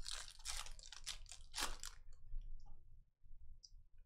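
Foil trading-card pack wrapper crinkling as the pack is torn open and the cards are slid out, in dense rustles for about two seconds, then a few faint clicks of card handling.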